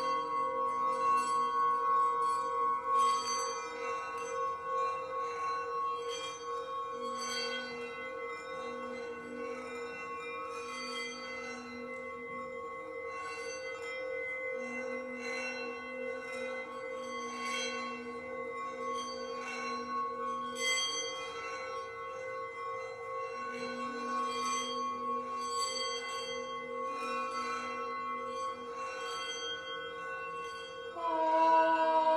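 Singing bowl ringing on and on, several tones sounding together, with a lower tone that swells in and drops out four times and faint light ticks throughout.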